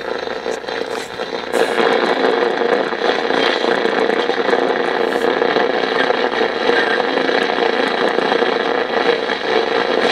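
Steady static hiss and rushing noise from a 1970 Motorola solid-state AM/FM clock radio's speaker as its tuning dial is turned between stations, with a few crackles.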